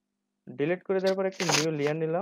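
Speech only: a man talking in Bengali, starting about half a second in after a brief silence.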